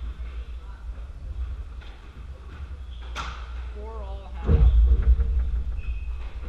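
Squash court between rallies, with a steady low rumble in the hall. A single sharp crack rings out about halfway through, a brief voice follows, then heavy low thuds make the loudest part just after.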